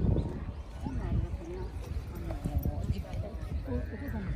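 Indistinct chatter of several people talking at once, over a low uneven rumble.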